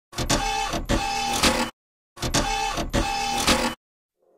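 A mechanical whirring sound with clicks and a steady tone, about a second and a half long, played twice as identical copies with a short silent gap between them.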